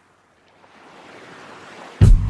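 A pause between two songs: near silence at first, then a faint hiss-like noise that swells steadily louder from about half a second in until the next song begins.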